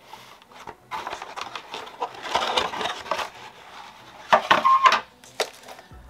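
Cardboard box packaging and plastic-bagged accessories being handled: a stretch of scraping and rustling, then a cluster of sharp clicks and crinkles about four seconds in.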